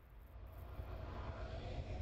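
Logo-animation sound effect: a low rumble that slowly swells louder.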